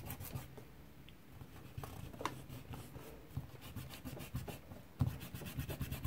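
A rubber eraser scrubbed back and forth over paper in quick, soft strokes, rubbing out pencil lines, with a short pause about a second in.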